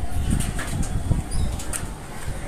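Gusting wind buffeting a phone's microphone: an uneven low rumble that swells and dips, with a faint hiss over it.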